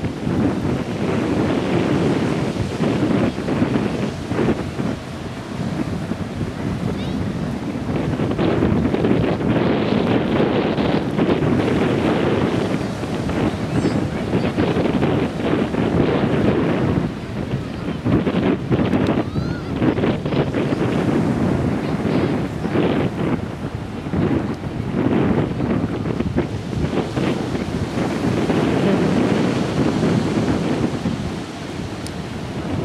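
Small waves breaking on a sandy shore, mixed with wind rumbling on the microphone; the noise swells and eases every few seconds.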